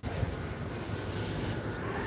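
Steady, even background noise of a large store's interior, picked up by a phone microphone that is being carried along.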